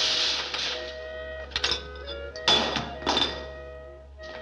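Background film music with steady held notes, broken by a rush of noise at the start and a few short thuds or knocks about one and a half, two and a half and three seconds in.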